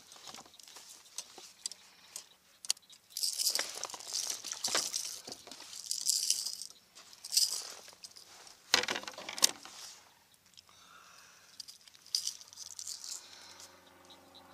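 Fishing tackle clattering and rustling on a plastic kayak as a small fish is brought aboard and unhooked: irregular clicks and scuffing bursts, the loudest about nine seconds in.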